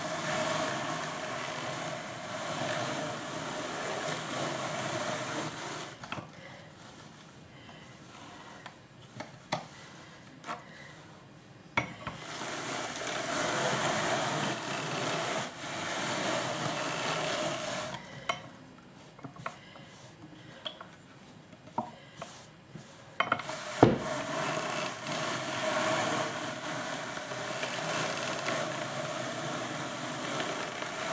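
Hand-cranked wooden drum carder turning as wool fleece is fed onto its wire-toothed drums: three spells of steady rasping whirr, with quieter pauses of light clicks and handling between them and one sharp knock about two-thirds through.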